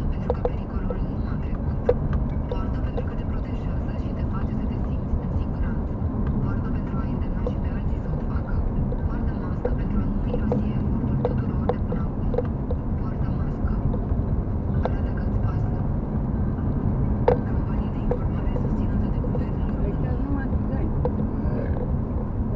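Steady low rumble of a car's road and engine noise heard from inside the cabin while driving, with scattered light ticks and rattles, one sharper tick near the end.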